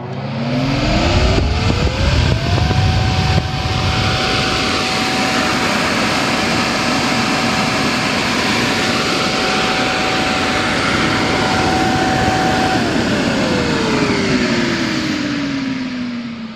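Shunde Huawei W-4L electric centrifugal air blower running loud, with rushing air and a motor whine. The whine rises as it spins up over the first few seconds, holds steady, then falls away near the end as the blower is switched off and coasts down.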